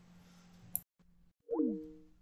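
A mouse click on Microsoft Teams' hang-up button, then, about a second and a half in, Teams' short call-ended tone: a quick downward-gliding 'bloop' that settles into two held low notes and fades within about half a second.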